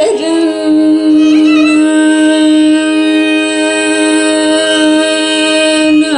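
Carnatic music in raga Saveri: a woman's voice holds one long steady note for about five seconds, with violin accompaniment and a brief wavering ornament above it about a second and a half in.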